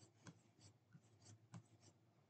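Near silence: faint room tone with a steady low hum and soft, irregular small clicks, about seven or eight in two seconds.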